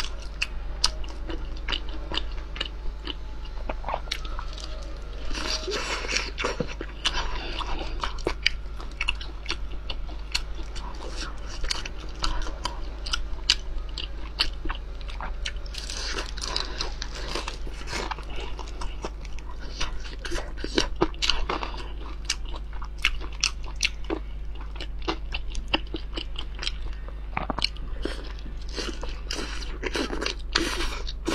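Close-miked biting and chewing of pan-fried lamb-intestine sausage stuffed with meat: many short, sharp mouth clicks one after another.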